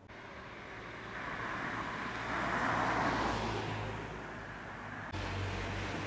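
A car passing by on a street, its noise building to a peak about three seconds in and then fading. Just after five seconds the background cuts abruptly to a steadier street traffic sound.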